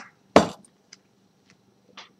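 A sharp knock about half a second in, followed by a few faint clicks, as objects are handled and set down close to the microphone.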